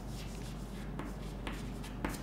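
Chalk writing on a chalkboard: a run of short, faint scratching strokes over a steady low hum.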